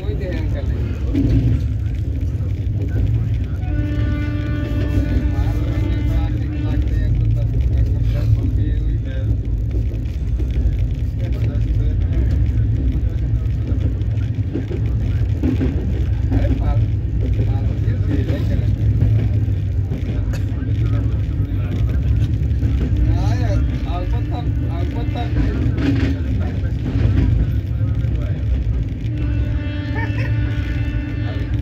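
Steady low rumble of a train running at speed, heard from inside a coach. A held tone sounds over it twice, for a few seconds each time, about four seconds in and again after about twenty-three seconds.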